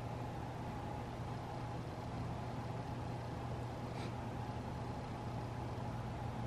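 Steady hum and hiss of household air conditioning running, with a low hum and a faint higher whine. A faint click about four seconds in.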